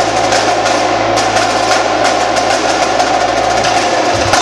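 Indoor percussion drumline of marching snares, tenor drums and bass drums playing a loud, dense passage of rapid strokes, close to a continuous roll, with a steady low rumble from the bass drums underneath.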